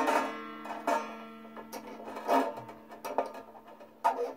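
An Irish tenor banjo string ringing at one steady pitch and slowly dying away, sounded as the old string is unwound off its tuning peg. Several light clicks and taps of the string and peg being handled come through over the ring.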